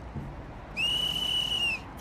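A referee's whistle: one steady, high-pitched blast lasting about a second, calling a foul as the penalty flag is thrown.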